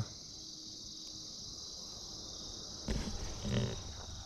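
Crickets chirring in a steady, dense chorus. About three seconds in, a brief, louder handling noise.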